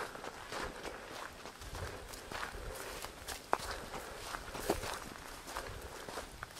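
Quiet, uneven footsteps of a person walking on a dirt and leaf-strewn trail.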